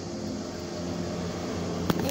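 Air hissing out of the pinched-open valve of a vinyl inflatable swan as it deflates, growing slightly louder, with one sharp click near the end.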